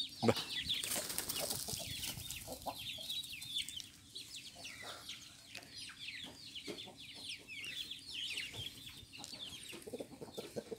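Chickens clucking while chicks peep in a steady stream of short, high, falling peeps.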